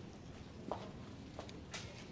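Footsteps on a carpeted walkway, with a few sharp clicks and knocks, the loudest near the end, over a steady low background hum.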